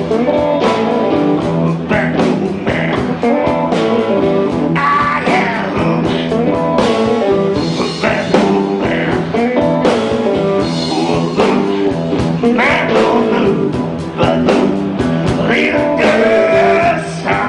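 Live electric blues band playing a Chicago blues number: electric guitars, bass and drum kit over a steady beat, with a lead voice at the microphone.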